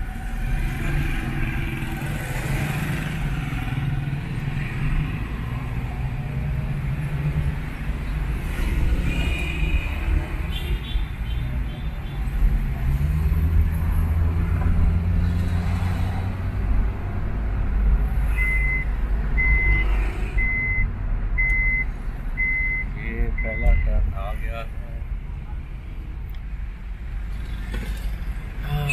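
Road and engine rumble inside a car cabin while driving in city traffic. A little past the middle comes a run of about six short, evenly spaced high beeps, roughly one a second.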